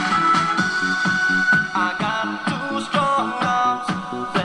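Music played through a homemade battery-powered 12 V tube amplifier with three subminiature tubes (a 5672 and two 5676), putting out less than a watt into a loudspeaker. The music has a fast steady beat and a melody, and the sound is thin, with little bass.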